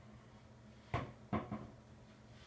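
Three short knocks, the first about a second in and two more close together about half a second later, over a faint low hum.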